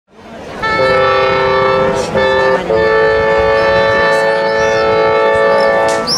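A small woodwind ensemble of clarinets and a bassoon plays slow, sustained chords. It changes chord twice in the first seconds, then holds one long chord for about three seconds, which is cut off near the end.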